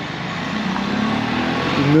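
Classic BMW saloon's engine running as the car drives around a roundabout toward the listener, growing steadily louder.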